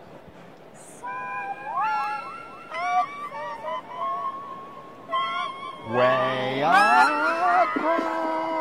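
A woman singing a short run of held and sliding notes into a toy karaoke microphone. About six seconds in, a man joins in loudly with a note that slides up from low.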